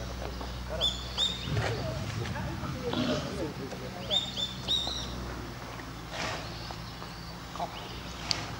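Background murmur of people talking, with two short runs of high bird chirps, about a second in and again about four seconds in.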